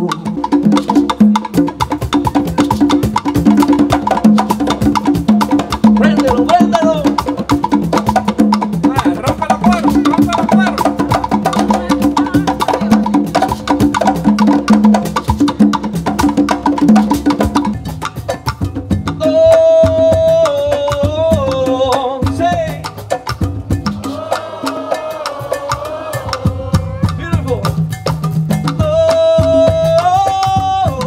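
Live Afro-Cuban percussion: several congas played in a fast, interlocking rhythm with a sharp wood-block-like click pattern. From about 19 s a lead singer's voice comes in over the drums.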